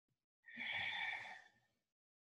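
A woman's audible exhale, a soft sigh-like breath out about a second long, starting about half a second in, taken while holding a seated forward-fold stretch.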